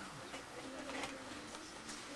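Faint, low cooing of a dove.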